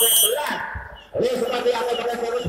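Volleyball referee's whistle: one short, shrill blast of about half a second right at the start, the signal authorising the serve. It is heard over a voice on the public-address system.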